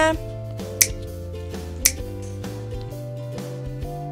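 Two sharp snap sound effects about a second apart, a cartoon effect for snapping teeth, over soft background music with held notes.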